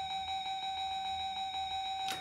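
An electronic slot machine sounds one steady beep tone, held unbroken while credits are loaded as bets onto its fruit symbols.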